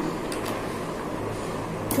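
Steady low room hum, with a few faint light clicks as plastic bottle caps are slid onto the pen rods of a homemade abacus.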